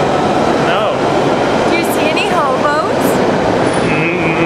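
Loud, steady rumbling din of a London Underground train in the station, with a few brief snatches of voice over it.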